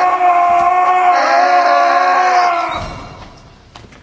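A person's long scream held on one steady, fairly high pitch, fading out about three seconds in.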